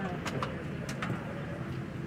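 Airliner cabin noise after landing: a steady low hum under faint murmuring voices, with four short sharp clicks or knocks in the first half, such as seatbelt buckles or fittings handled by passengers getting up.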